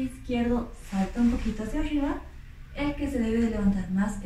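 A woman speaking, in short phrases with brief pauses.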